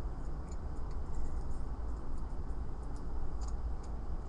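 Faint, scattered small clicks and ticks of a key and metal Chinese padlock being worked by hand, over a steady low hum.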